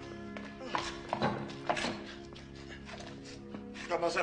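Film score music with held, sustained tones, over which a few sharp knocks fall between about one and two seconds in.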